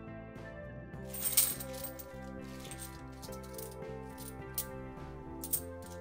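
Cupronickel 50p coins clinking against each other as a handful is sorted and shuffled in the hands. The clinks start about a second in, with the loudest clatter just after, over steady instrumental background music.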